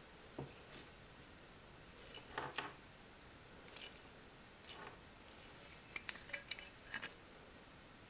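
Faint handling noises of an ESEE-5 fixed-blade knife being turned over in the hands: scattered light clicks and short rustles, with a quick run of sharper clicks near the end.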